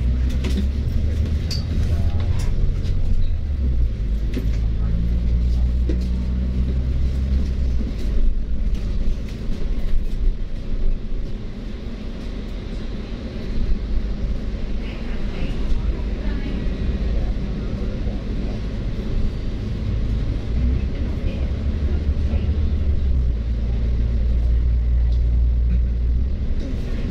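Cabin sound of a moving double-decker bus: a steady low engine and road rumble, with occasional short clicks and rattles. The rumble eases in the middle stretch and builds again near the end.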